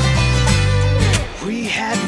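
Band music led by guitar, with bass and drums. A little over a second in, the low end drops away briefly, leaving a wavering melody line over the guitar.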